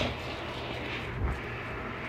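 A steady low mechanical hum, with a faint dull bump about a second and a quarter in.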